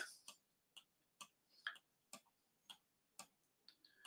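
Near silence with faint, regular ticks, about two a second.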